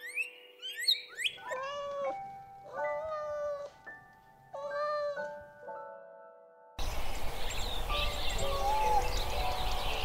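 A kitten meowing three times, each meow under a second long, over soft background music. A few quick bird chirps come just before the meows, and near the end a steady, louder outdoor hiss cuts in.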